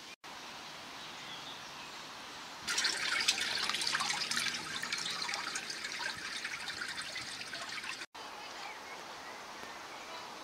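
Water trickling and bubbling, starting about three seconds in and stopping abruptly about five seconds later. Before and after it there is only faint steady background.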